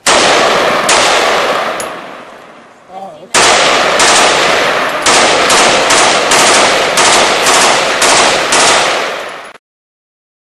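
Gunfire: a loud shot at the start rings out and fades over a couple of seconds, with two lighter shots about a second apart. After a short lull comes a rapid run of shots, about three a second, that cuts off abruptly near the end.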